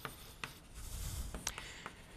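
Chalk writing on a blackboard: a handful of short sharp taps with light scratching strokes between them.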